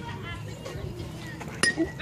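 A metal youth baseball bat striking the pitched ball: one sharp ping about one and a half seconds in, with a brief ring after it. This is the hit that puts the ball in play. Faint spectator chatter runs underneath.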